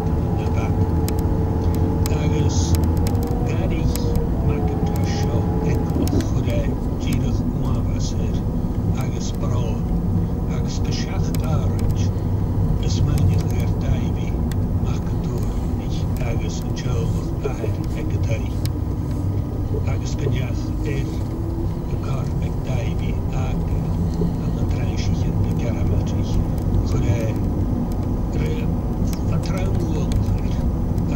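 Car engine and tyre noise heard from inside the cabin on a rough single-track road: a steady low rumble with the engine note dropping and rising again as the car drives on.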